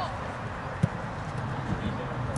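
A football kicked once, a short sharp thud about a second in, against steady outdoor background noise.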